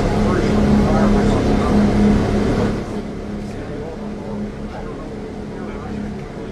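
Inside an airport apron bus, the bus is running with a steady low drone and hum. The sound drops in level about three seconds in.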